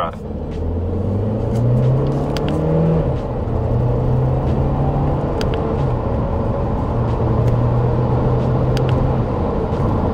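Audi Q2's 1.5 TFSI turbocharged four-cylinder petrol engine pulling under acceleration, heard from inside the cabin. Its pitch climbs, then drops at an upshift of the seven-speed S tronic dual-clutch gearbox about three seconds in, climbs again, drops at a second shift around six seconds, and then holds steady.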